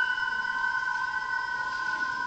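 Concert band in a soft passage: two high notes held steadily, with the fading ring of a struck mallet-percussion note underneath.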